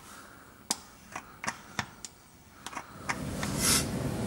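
A few scattered sharp clicks and light knocks from the gear-oil pump's clear fill hose being handled at the differential's fill hole, followed by a short hiss near the end.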